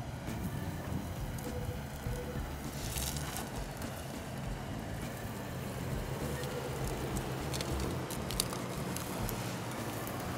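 A 2008 Hummer H3's engine runs steadily at low speed as the truck crawls over dry sagebrush. Twigs crackle and snap under the tyres and against the body, about three seconds in and again near the end.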